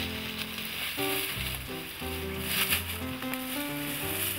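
Instrumental background music, a sequence of held notes over a bass line, with a steady hiss underneath.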